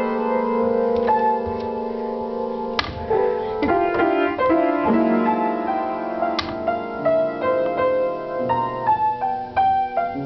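Upright piano played slowly, held chords and single notes changing every second or so, with a few notes struck sharply.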